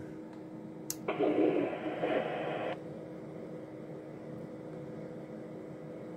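A single sharp click from the Stryker SR-955HP radio's controls, then a burst of hiss from its speaker lasting under two seconds that cuts off suddenly. A steady faint hum follows.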